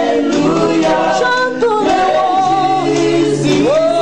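A woman singing a slow gospel worship song, holding long notes that slide up and down in pitch.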